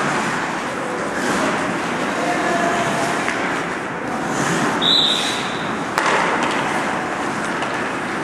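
Ice hockey skates scraping and carving on rink ice, with distant players' voices in the hall's reverberant ambience. A short, high whistle blast sounds about five seconds in, and a sharp crack of a puck or stick against the boards follows about a second later.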